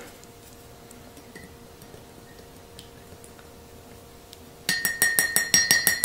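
Spoon stirring coffee in a glass mug, clinking quickly against the glass about six times a second. The clinking starts near the end, after a few seconds of faint, steady room hum.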